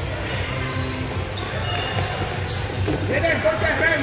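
Sounds of a floorball game on an indoor sports floor: irregular thumps and knocks of feet, sticks and the ball. From about three seconds in, children's voices shout over them.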